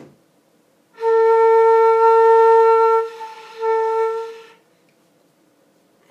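Concert flute playing the note A twice: one note held about two seconds, then a shorter one at the same pitch, with breath noise audible over the tone.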